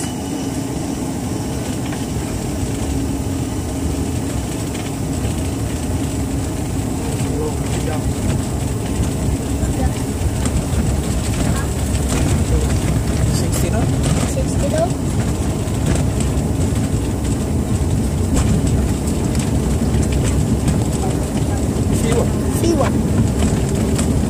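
Jet airliner's engines at takeoff thrust with the rumble of the wheels on the runway, heard from inside the cabin, growing steadily louder as the plane accelerates along its takeoff roll.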